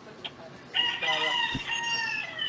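A man's shrill, high-pitched shriek, held for about a second and a half from just under a second in, its pitch easing down slightly at the end. A soft low bump on the microphone comes partway through.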